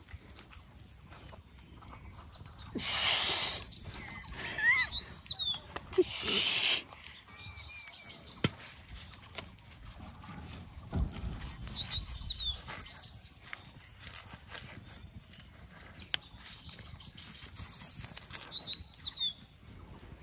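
Songbirds calling, one phrase repeated about three times: a quick high trill followed by short falling whistles. Two short loud rustles about three and six seconds in, with small clicks and handling noises as chopped food is packed into a green bamboo tube.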